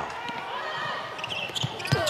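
A basketball being dribbled on a hardwood court during a fast break, with faint sounds of players moving on the floor.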